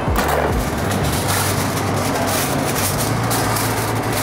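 Aluminium foil crinkling and rustling as a sheet is pulled over and wrapped around a takeaway rotisserie chicken, over background music with a steady bass line.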